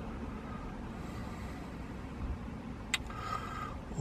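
Low steady vehicle rumble heard inside a van's cabin, with a single sharp click about three seconds in.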